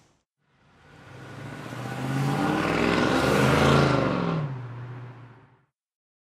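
A car engine passing by: the sound swells from silence to a peak about three and a half seconds in, then its pitch drops as it fades away.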